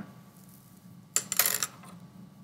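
A sheet of paper and a pen handled on a desk: a short scratchy rustle with a few sharp clicks just past a second in, lasting about half a second.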